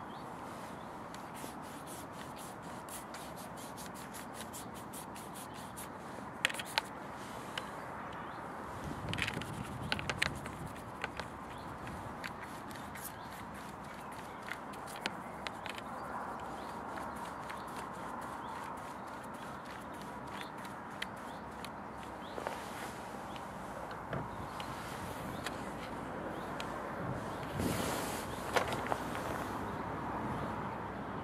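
A wide flat watercolour brush sweeping clear water across the paper in soft scraping strokes, wetting the sheet before any paint goes on, over a steady outdoor background hiss. A few sharp clicks and taps come through, a handful about a third of the way in and again near the end.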